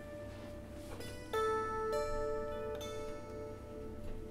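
A handful of single plucked zither notes, slow and sparse, each ringing on long after it is struck; the loudest comes about a second and a half in.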